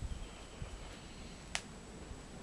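A single sharp click about one and a half seconds in, over a faint low rumble.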